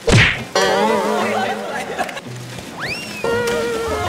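Edited comedy sound effects: a loud whoosh at the start, then a warbling, wobbly jingle. About three seconds in comes a quick rising whistle-like glide, followed by a held steady tone.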